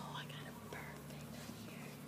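Children whispering quietly over a steady low hum.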